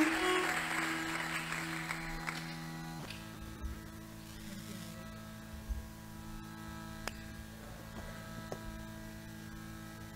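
Hindustani violin ends a sliding phrase on a held note that fades over the first two or three seconds, leaving a quiet steady drone under it with a few faint ticks. The violin comes back in right at the end.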